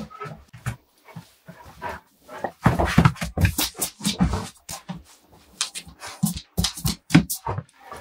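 A large curly-coated dog playing with a plush pillow on a wooden floor: a run of sharp clicks and knocks from its feet and the toy, densest and loudest a few seconds in, with rustling of the pillow.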